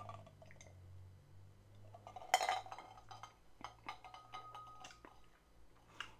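Faint clinking of an ice cube against a whiskey rocks glass: a few small clicks over a couple of seconds, with a short rush of noise about two seconds in and a brief faint ring near the end as the glass is handled and set down.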